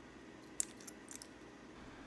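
A sharp plastic click about half a second in, then a few fainter ticks, from a white 3D-printed two-touch buckle being handled in gloved hands.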